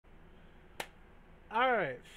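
A single sharp click a little under a second in, over a faint low hum, followed by a man saying "All right".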